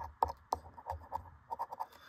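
A metal coin scraping the coating off a scratch-off lottery ticket in a run of short, quick strokes.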